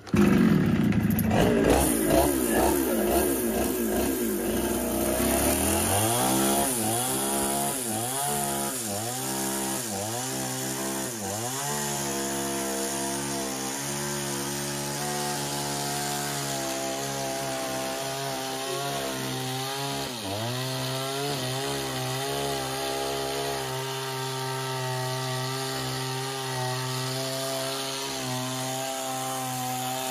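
Two-stroke chainsaw bursting into loud running as it starts. Its engine pitch then dips and recovers about once a second for several seconds. It then runs at a mostly steady pitch while the chain cuts along the edge of a wooden board.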